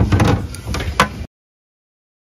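Handling noise of a hard-shell suitcase being lifted and moved over a tray on a table: clattering with two loud knocks about a second apart. It cuts off suddenly after a little over a second.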